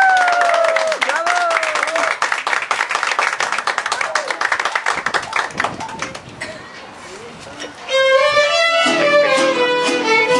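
A small crowd clapping, with voices over it, as a song ends; the clapping fades out after about five seconds. Just before the end, a mariachi band with violins starts playing again.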